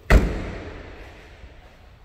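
The trunk lid of a 2012 Ford Mustang coupe slammed shut: one heavy thud just after the start, dying away over about a second.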